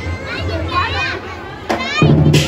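Children's high voices calling out in a crowd of spectators, over a steady low hum, with a single sharp knock near the end.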